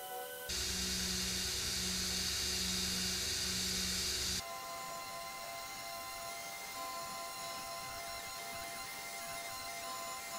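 Belt grinder sanding a metal motorcycle seat pan held against the belt: a loud hissing grind over a low motor rumble, starting about half a second in and cutting off abruptly after about four seconds. Background music with steady tones plays around it.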